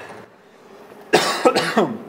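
A man coughing hard two or three times, about a second in, winded after an exhausting workout.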